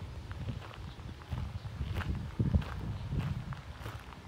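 Footsteps of a person walking at an even pace along a path, each step a soft low thud with some light scuffing.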